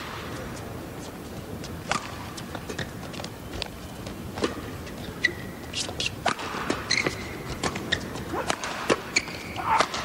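Badminton rally: sharp racket-on-shuttlecock hits at irregular intervals of about half a second to a second, with short shoe squeaks on the court floor, over the steady murmur of an arena crowd.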